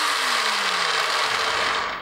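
Brushless electric motor and gear drivetrain of a Traxxas Stampede 4x4 RC car running forward on throttle, a loud whirr of spinning gears. Its pitch falls steadily as it slows, and it stops just before the end.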